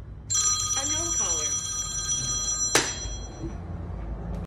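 An electronic ringing tone, several steady high pitches at once, starts about a third of a second in and cuts off with a sharp click a little before three seconds. A short wavering lower tone sounds within it about a second in.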